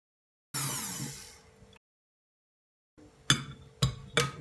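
Electric hand mixer whirring briefly, starting suddenly and dying away within about a second. After a pause come two sharp clinks of its metal beaters against the glass mixing bowl.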